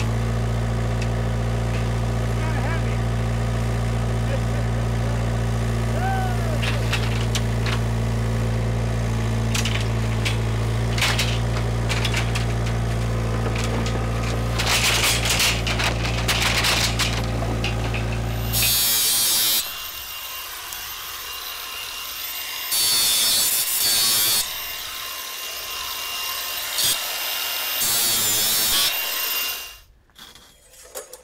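Vermeer S800TX mini skid steer's engine running steadily, with knocks and clanks of steel angle bars shifting against its forks. About two-thirds of the way in the engine sound stops, and several loud scraping bursts follow as long steel angle bars are dragged over the pile.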